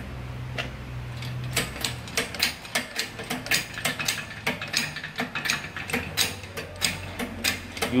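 Shop press being worked as its threaded ram is lowered toward a wheel hub, ready to press the hub out of a Toyota Hilux front wheel bearing. A low steady hum is followed, from about a second and a half in, by a rapid, irregular run of sharp mechanical clicks, several a second.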